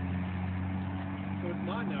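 Steady low hum of an idling engine, with a voice starting near the end.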